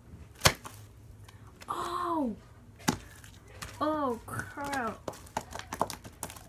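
Slime being stretched and pressed by hand on a wooden floor, giving a sharp snap about half a second in, another near three seconds, and a run of small clicks and pops near the end. In between, a girl's voice makes a few wordless falling sounds.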